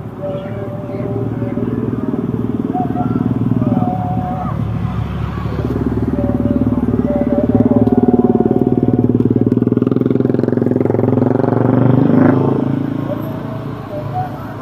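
Slow car traffic and a motorcycle passing close by. The engine and tyre noise builds to its loudest about eight seconds in as the motorcycle goes past, then swells again a few seconds later as more cars pass close.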